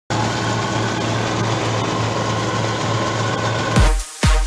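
Bizon Super Z056 combine harvester running steadily as it harvests: a constant low engine hum under a wide, even mechanical noise. Electronic dance music with a heavy kick drum cuts in just before the end.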